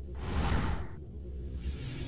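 Whoosh sound effects over a low music bed for a logo reveal. One swell of rushing noise peaks about half a second in and fades, and a second starts building near the end.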